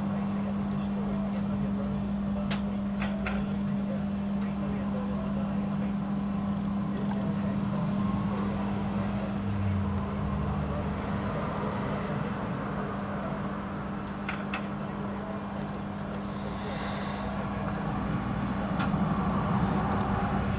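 A steady low hum over a background of noise, with a few faint clicks.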